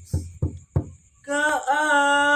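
Three quick knocks about a third of a second apart, then a man's voice comes in a little past a second and holds a long, steady sung note.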